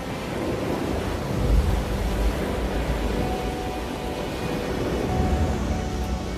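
Ocean surf, a rushing wash that swells about one and a half seconds in and again near five seconds, under soft background music with a few held notes.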